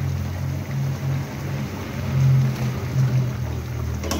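Low, uneven rumble of a gas burner on high flame under a pan of chicken simmering in its sauce.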